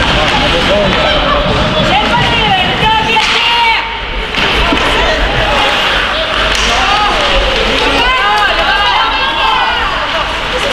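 Voices shouting and calling across an echoing indoor ice rink during hockey play, over a steady noise of play on the ice with occasional knocks of sticks and puck. The shouting comes in bursts, about three seconds in and again near the end.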